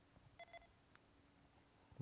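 Near silence, with one faint short electronic double beep about half a second in.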